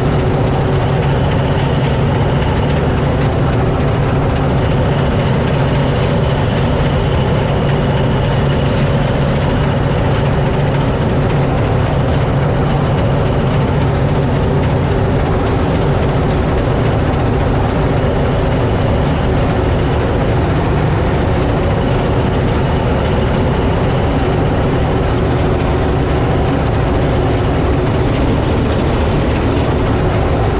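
Massey Ferguson 86 combine harvester running steadily while cutting and threshing triticale: engine and threshing machinery heard from the operator's seat, with a slight shift in the engine note about halfway.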